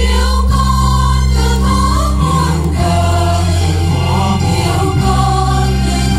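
Choir singing a Vietnamese Catholic hymn over instrumental accompaniment with sustained bass notes.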